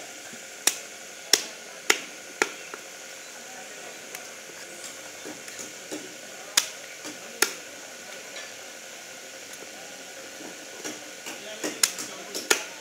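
Large knife chopping through pieces of fish onto a wooden log chopping block: sharp knocks, four in the first two and a half seconds, two more a little after six seconds in, and a quick run of them near the end, over a steady background hiss.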